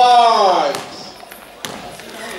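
A long shouted call that falls in pitch and fades out within the first second, then a single sharp basketball bounce on a gym floor about one and a half seconds in.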